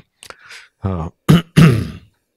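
A man clearing his throat close to a handheld microphone, in a few short, loud voiced rasps in the second half.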